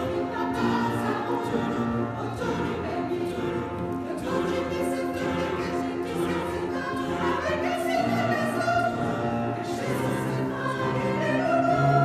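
Mixed choir of men and women singing in a stone church, with sustained notes that change pitch every second or two and carry on without a break.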